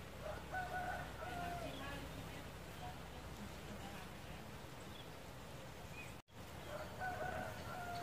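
A rooster crowing twice, once about half a second in and again near the end.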